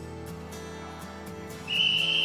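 Background music, with one short, loud blast of a sports whistle near the end, louder than the music.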